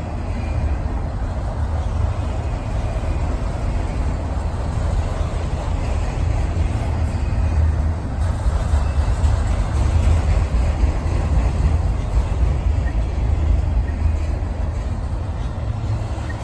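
Freight train of autorack cars rolling slowly past at close range: a steady, deep rolling noise of steel wheels on rail.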